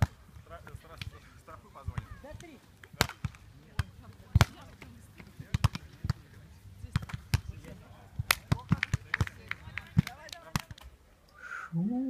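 Volleyballs being struck, heard as irregular sharp slaps several times a second, with faint distant voices. A brief louder pitched sound comes near the end.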